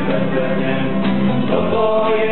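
A small parish church choir (schola) singing a hymn, holding sustained notes, with the notes changing about one and a half seconds in.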